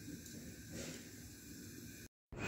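Faint steady hiss with no distinct event: low background noise.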